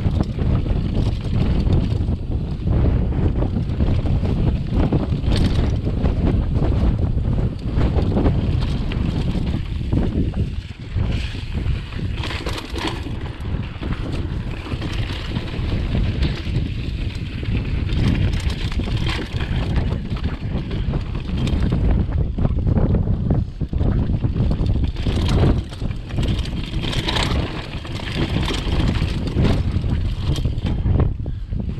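Wind buffeting the microphone of a handlebar-mounted camera as a mountain bike rides over rough dirt singletrack, with steady tyre noise and frequent short knocks and rattles from the bike over the bumps.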